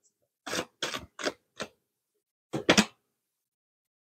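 A deck of tarot cards being shuffled and handled by hand: a run of short papery rustles of card sliding on card, about four in the first two seconds and another about two and a half seconds in.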